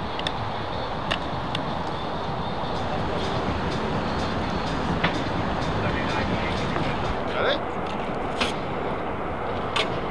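Fire engine's diesel engine idling at the scene, a steady low rumble, with faint voices over it.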